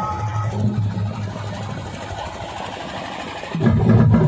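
A break in the music from a DJ loudspeaker rig: a low steady hum under crowd noise, then loud bass-heavy music with drums kicks back in near the end.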